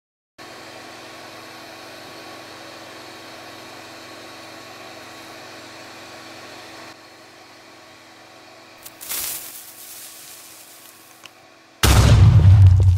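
3D printer's fans running: a steady hum with several steady tones, a little quieter about seven seconds in, with a brief rustle near nine seconds. Right at the end a loud explosion-like boom with music cuts in.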